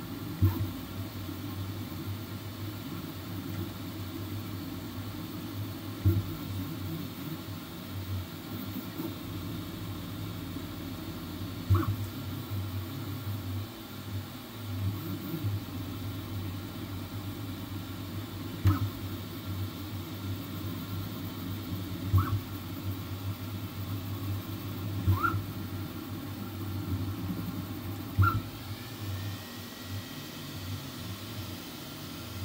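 Flsun V400 delta 3D printer running a print: a steady mechanical hum from its motors and fans. A brief sharp blip with a short higher tone comes every few seconds, and a rising whine starts near the end.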